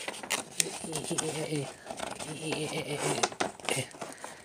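Indistinct speech from a man's voice in two short stretches, with a few sharp clicks and crinkling from handling the card-game packaging and folded play mat.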